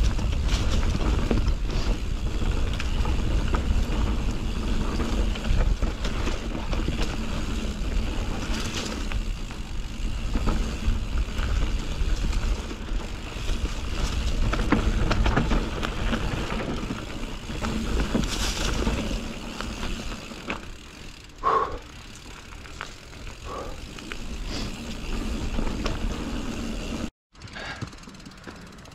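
Nukeproof Mega full-suspension mountain bike descending a dry dirt trail: tyres rolling over dirt and dead leaves, the bike rattling and knocking over bumps, and wind rumbling on the camera's microphone. It gets quieter about twenty seconds in and cuts out briefly near the end.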